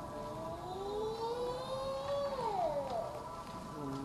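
Conch shell (shankha) blown in one long note that climbs slowly in pitch, then drops off and fades about two and a half seconds in.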